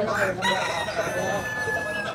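A rooster crowing: one long, drawn-out call that starts about half a second in and sags slightly in pitch toward its end.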